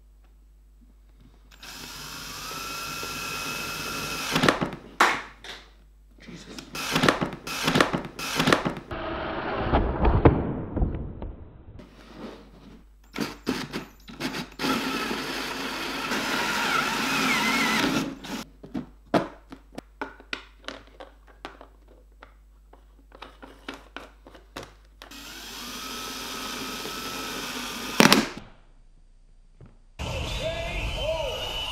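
Cordless drill with a hole saw cutting into a thin plastic container lid, running in stretches with a steady motor whine and stopping and starting in short bursts between them. Near the end there is one sharp crack: the lid splitting under the hole saw because it was not resting on a flat surface.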